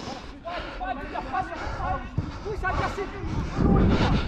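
Players' voices shouting and calling across a football pitch, heard at a distance from the wearer. A low rumble on the microphone swells near the end.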